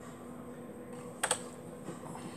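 One sharp keystroke on a computer keyboard a little over a second in, the Enter key pressed to run a typed install command, over a steady low hum.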